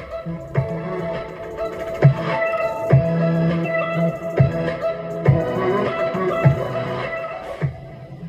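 Guitar music with a steady beat played through a repaired AB2000 amplifier module into a speaker. It sounds normal and clean, without distortion, a sign that the amplifier with its adapted input transformer works. The volume drops slightly near the end.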